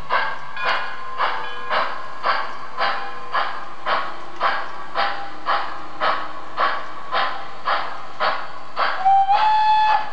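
Sound system of an MTH model of steam locomotive BR 18 412 playing steady steam chuffs, about two a second, as the model runs. About nine seconds in, a whistle sounds for about a second, rising slightly in pitch and then holding.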